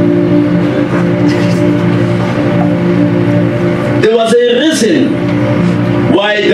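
A held chord on a keyboard drones steadily. About four seconds in, a man's loud, strained voice breaks in over it.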